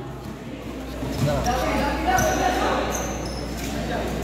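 Basketball bouncing on a hard court during a game, with a few short high squeaks in the second half and players' voices.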